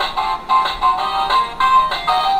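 Chicco Basket League elephant basketball toy playing its electronic tune through its small speaker, set off by its Try Me button: a quick melody of short notes.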